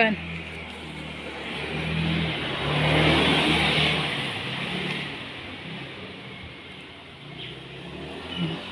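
A motor vehicle passing along the street, its engine and tyre noise swelling to a peak about three seconds in and then fading away.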